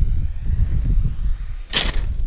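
Wind buffeting a camera microphone outdoors: a loud, uneven low rumble, with a short sharp burst of noise near the end.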